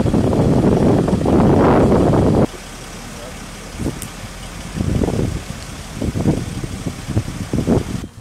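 A loud, low rumbling noise stops abruptly about two and a half seconds in. After it come several people talking quietly.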